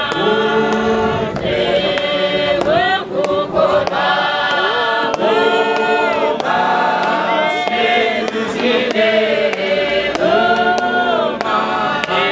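A congregation singing a hymn together in many voices, with long held notes that slide from one pitch to the next between phrases.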